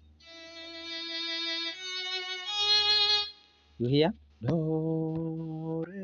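Synthesized cello playback from a music notation app: three steady notes stepping upward, a long first note and two shorter ones, lasting about three seconds. After a brief spoken question, a lower steady held tone sounds near the end.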